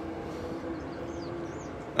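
Steady outdoor background noise with a faint low hum that fades near the end, and a few faint high chirps around the middle.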